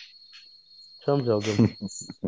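A short stretch of a man's voice about a second in, over a steady, thin, high-pitched whine.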